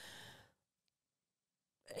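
Near silence: a faint breath trails off in the first half second, then nothing at all until speech resumes near the end.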